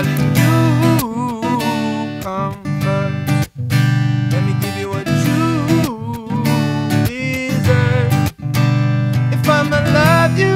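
Live acoustic guitar strummed under a male voice singing a pop-soul melody with wavering, drawn-out notes. The playing breaks off sharply twice, about three and a half and eight and a half seconds in.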